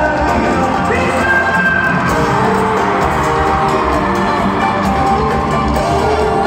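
Live bachata band playing through an arena sound system with a male lead singer, recorded from among the audience, with some crowd cheering and whoops.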